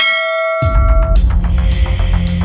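A bell-chime sound effect rings for about a second, then loud bass-heavy background music with a steady beat comes in about half a second in.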